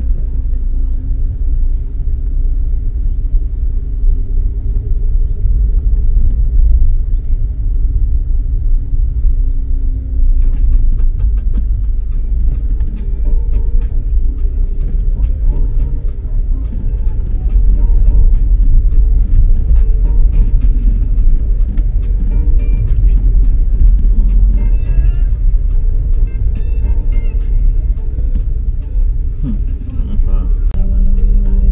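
Car cabin noise while driving an unpaved dirt road: heavy, steady low tyre and road rumble. From about ten seconds in, many sharp clicks come on top of it.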